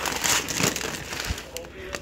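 Plastic food packaging crinkling and rustling, with small irregular crackles, as a bag of jasmine rice is pulled out from among other bagged food.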